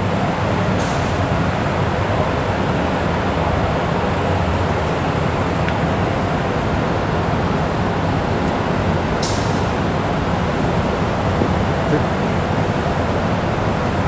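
Compressed air rushing steadily into a silicone mask mold to break the seal on a freshly cast mask. Two short, sharper hisses come about a second in and about nine seconds in.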